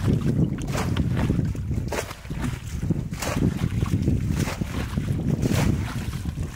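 Muddy shallow water splashing and sloshing as a plastic bucket is scooped through it, repeated splashes about once a second, over a steady low rumble of wind on the microphone.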